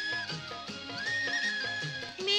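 A 1959 Hindi film song playing from a vinyl record. This stretch is an instrumental passage between sung lines: long held melodic notes that step up and down in pitch, over a light, regular rhythmic accompaniment.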